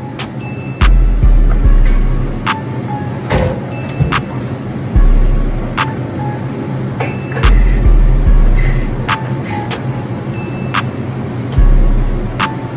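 Background music: a beat with deep booming bass hits every second or so, under a steady low hum of bass tones and crisp ticking hi-hats.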